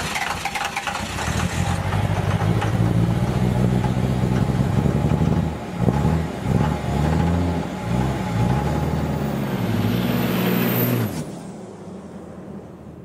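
A motor vehicle engine running and being revved up and down several times, the revs rising and falling repeatedly in the latter half, before stopping about a second before the end.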